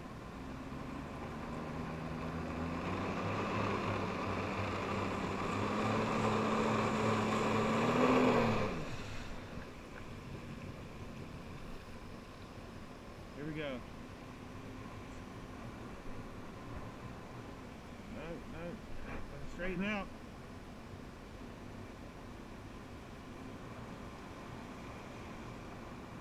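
Personal watercraft engine driving a flyboard, throttled up with its pitch and level climbing steadily for about eight seconds, then cut back abruptly about nine seconds in to a low idle. Brief voices call out a few times later on.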